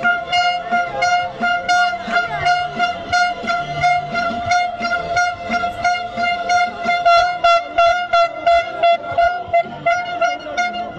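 A steady, unbroken horn-like tone held for the whole stretch over a regular beat of about two to three pulses a second, in a crowded street protest.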